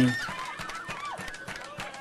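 Faint, overlapping voices of people nearby, with a few light clicks over a low background hiss, just after the last syllable of a man's speech.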